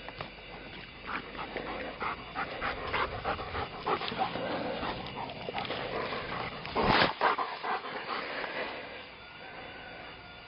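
A Lab–shepherd mix dog panting close by, with short irregular scuffling sounds and one brief, louder burst of noise about two thirds of the way through.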